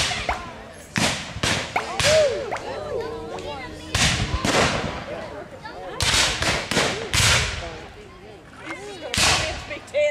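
Black-powder muskets firing blank charges in a reenacted battle: scattered sharp shots with echoing tails, about fifteen in all, some singly and some in quick clusters of three or four.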